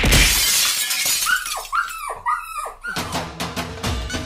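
A crash like glass shattering, then four short falling tones in quick succession. Music with a steady beat starts about three seconds in.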